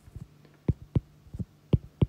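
A stylus tapping on a tablet screen while handwriting letters: a series of short, sharp taps, about five or six in two seconds.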